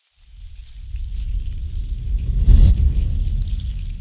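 A deep rumbling swell, a transition sound effect, building up, peaking about two and a half seconds in with a brief airy burst, then fading.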